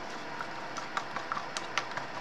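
Several light, irregularly spaced clicks and taps from handling the resin mold and supplies, over a steady background hiss.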